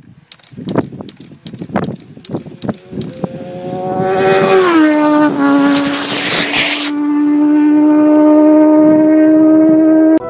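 Hydrogen-peroxide rocket on a bicycle speeding past: a loud whine builds, drops in pitch as it goes by about five seconds in, with a burst of hiss as it passes, then holds a steady tone. Before it, a few seconds of scattered crackles.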